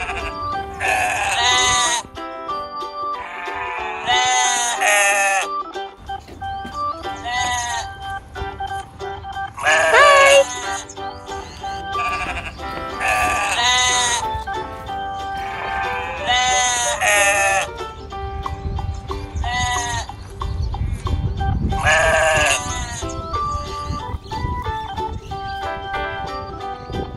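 Light background music with a tinkling melody, over which sheep bleat in long, wavering calls about every three seconds.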